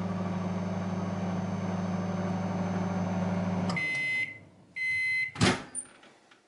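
Hinari microwave oven running with a steady hum, which stops as the countdown ends, followed by two beeps signalling the end of the cooking cycle. The door latch then clicks open.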